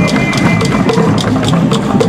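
Drum-led music: a dense run of quick percussive strikes over a repeating low line.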